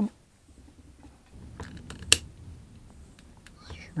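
Quiet handling noise of heat shrink tubing being slid onto the wires of an XT60 connector, with a few small clicks and one sharp click about two seconds in.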